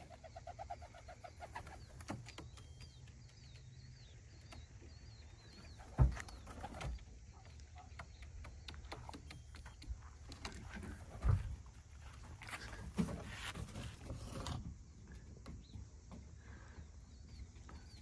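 Faint sounds of racing pigeons at the loft: soft cooing and stirring, broken by a few short knocks, the loudest about six seconds in.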